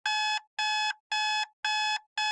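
Electronic warning alarm beeping: four identical, evenly spaced beeps, about two a second, each a steady, buzzy tone.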